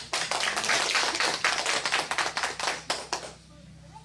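An audience clapping, many hands together, dying away about three seconds in.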